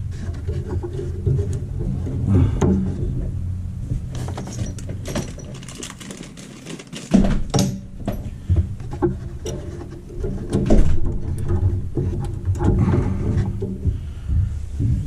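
Hands handling copper line fittings and foam pipe insulation at an evaporator coil: small clicks, taps and rustles. Under them runs a steady low hum that drops out briefly midway.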